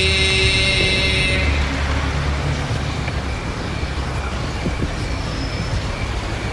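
A chanting voice holds a long note and fades out about a second and a half in. After it comes a steady, low background rumble.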